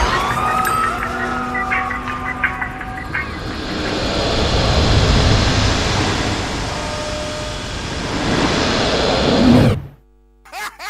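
Siren-like gliding tone over a loud, dense rushing noise that swells and falls, cutting off abruptly just before the end.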